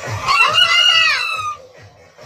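A rooster crowing once, a single call of about a second and a half that rises and then falls in pitch, loud over a steady dance-music beat.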